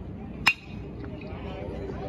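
A metal baseball bat hitting a pitched ball once about half a second in: a sharp ping with a short ring, the loudest sound here.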